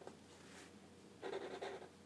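Faint scratch of a black felt-tip marker drawing a line on paper, mostly in one short stroke a little over a second in.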